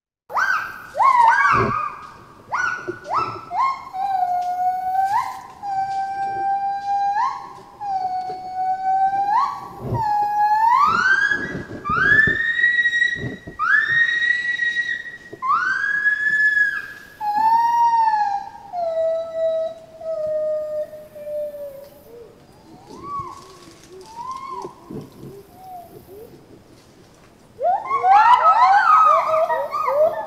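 Recorded song of a white-bearded gibbon (Hylobates albibarbis): a series of clear whooping notes that each sweep upward in pitch, then a long falling note, then softer scattered notes. Near the end the male joins with a burst of quick, overlapping notes.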